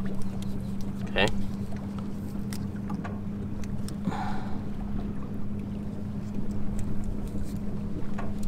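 A steady low motor hum over a rumbling background. A brief higher-pitched sound comes about four seconds in.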